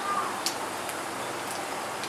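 Whole spice seeds sizzling in hot oil in a steel kadai: a steady hiss with a few faint pops.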